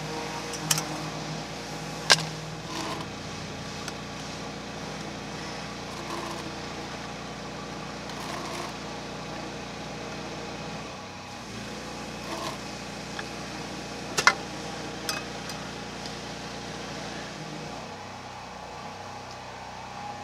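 A steady engine hum with several fixed tones runs under a few sharp metallic clicks and taps from the opened paint tin, its lid and a scraper being handled. The loudest clicks come about two seconds in and about fourteen seconds in.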